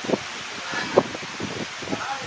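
Steady background hiss with faint rustling, broken by a couple of faint short sounds, one just after the start and one about a second in.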